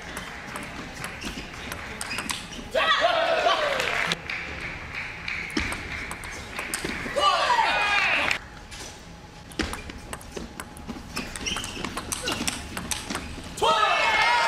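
Table tennis ball clicking in a doubles rally: quick sharp taps of bat strikes and table bounces. Two loud shouts follow, about three and seven seconds in. More single ball taps come near the end.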